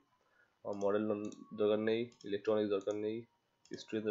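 A person speaking in tutorial narration, with computer mouse clicks.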